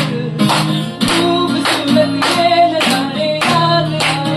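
Acoustic guitar strummed while a man sings, with several people clapping along in time, the sharp strokes coming about twice a second.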